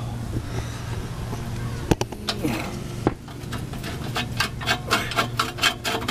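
Hand tools on a Jeep exhaust pipe at its clamped slip joint: two sharp knocks about two and three seconds in, then a run of quick metal clicks, about four a second, as the pipe is worked onto the joint. A low steady hum runs under the first half.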